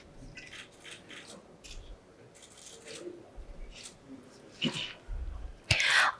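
Quiet hall ambience with scattered faint clicks and a few soft low thumps, and a sharp knock near the end.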